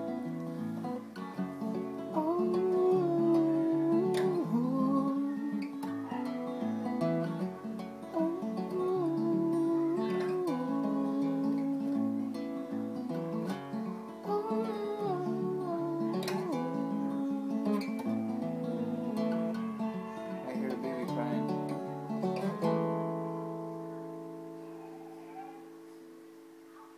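Acoustic guitar playing an instrumental passage, with a wordless sung melody gliding over it. About 23 seconds in, a chord is struck and left to ring, fading out.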